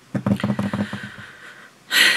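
A woman's low, creaky groan trailing off into an exhaled sigh of frustration, then a sharp intake of breath near the end.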